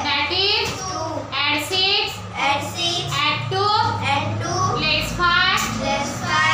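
Children's voices reciting an abacus sum aloud in a rhythmic sing-song chant, a running string of numbers.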